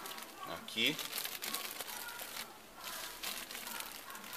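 Clear plastic bag crinkling and rustling as it is folded and pressed by hand around a ball of damp sphagnum moss wrapped on a branch. Short, irregular crackles run throughout, with a brief voice sound a little before a second in.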